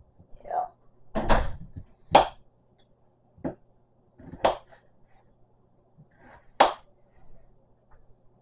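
A kitchen knife is cutting a potato on a plastic cutting board: about six separate knocks of the blade on the board, irregularly spaced roughly a second apart.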